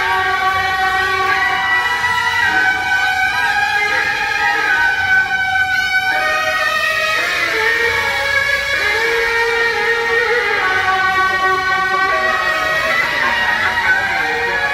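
Suona shawms of a Beiguan band playing a melody together in long held notes.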